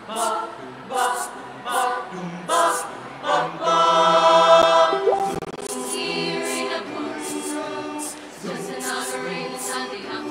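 Mixed choir singing a cappella without words: short, punchy chords about every three quarters of a second, then a loud sustained chord about four seconds in, followed by softer held chords.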